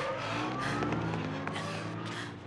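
A small car's engine running and speeding up as the car pulls away, its pitch rising, heard on a film soundtrack.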